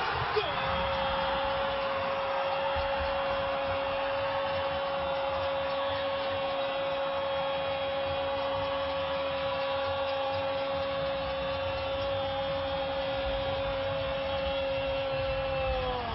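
A football commentator's long drawn-out 'Gol!' scream: one unbroken note held for about fifteen seconds, which dips and falls in pitch as it ends near the end.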